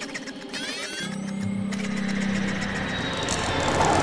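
Sci-fi robot and machinery sound effects: a quick run of electronic chirps rising in pitch about half a second in, then a steady motor hum that grows louder.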